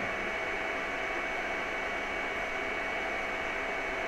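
Steady room noise: an even hiss with a faint, thin high whine running through it.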